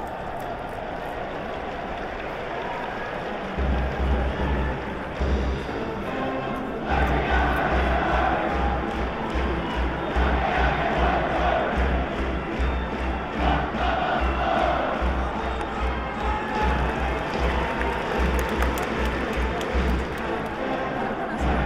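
Stadium cheering section's brass band playing a fight song over a steady bass drum beat, with the crowd behind it. The drum comes in about three and a half seconds in, and the band fills out a few seconds later.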